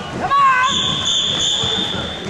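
A short wavering shout, then a steady, high referee's whistle blast held for about a second and a half over gym crowd noise.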